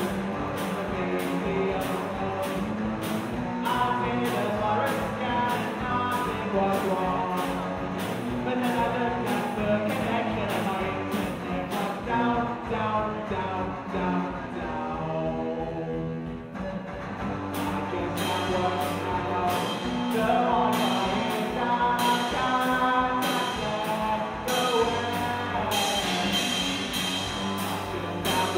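Live punk rock band playing: two distorted electric guitars over a drum kit keeping a steady beat. About halfway through, the drums stop for a few seconds, leaving the guitar alone, and then the full band comes back in.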